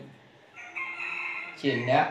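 A rooster crowing in the background: one held call lasting under a second, quieter than the nearby voices.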